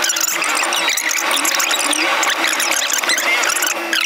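Fast-forwarded dialogue: voices sped up into a dense, high-pitched, squeaky chatter, which cuts off suddenly at the end.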